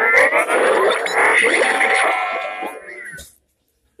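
Electronic sound effect from a talking Hulk action figure's built-in speaker, played right after one of its voice lines: one dense, warbling burst of about three seconds that fades and then stops.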